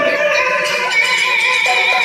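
Yakshagana music: the bhagavata's high sung voice holding a long wavering note, over a steady drone.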